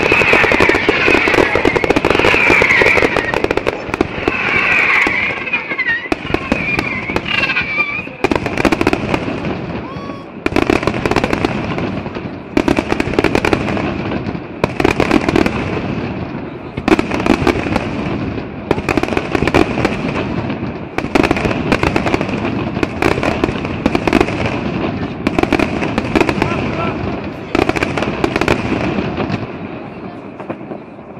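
Fireworks display: aerial shells bursting overhead. A dense barrage for the first several seconds gives way to a steady run of single bangs about once a second.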